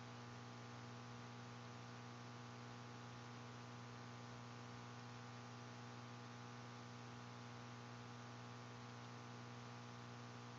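Low steady electrical mains hum with its overtones and a faint hiss; nothing else is heard.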